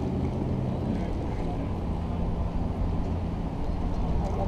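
A steady, low engine drone with wind noise on the microphone.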